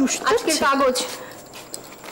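A baby whimpering and cooing: a few short, high-pitched wavering cries in the first second, then quieter.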